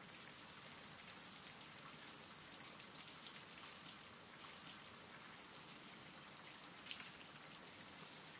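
Faint, steady rainfall from a background rain-sounds track, an even hiss with fine scattered drop ticks.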